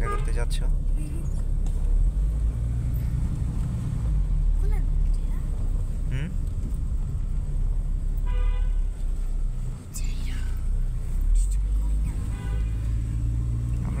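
Steady low rumble of a car's engine and tyres heard from inside the cabin while driving. A short horn toot from traffic sounds about eight and a half seconds in.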